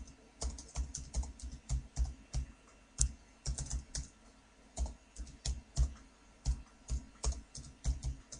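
Typing on a computer keyboard: irregular key clicks, about three a second, in short runs with brief pauses.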